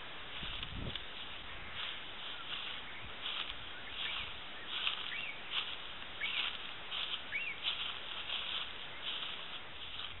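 Birds calling in the bush in short chirps and quick notes, over a steady background hiss of distant ocean surf. A brief low thump comes near the start.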